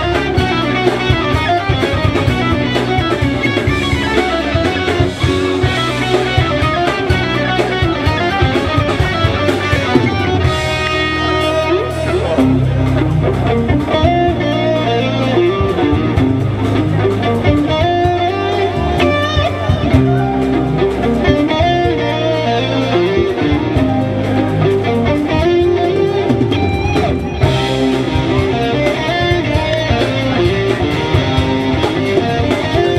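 A live rock band playing instrumental progressive music: electric guitar, bass guitar, keyboards and drum kit, running continuously at concert volume.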